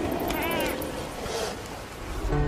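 A sea lion calling once from the colony, a short rising-and-falling cry about half a second in, over a steady background hiss.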